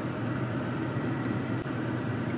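Steady, even rushing noise inside a parked car's cabin from the 2020 Toyota's climate-control fan blowing.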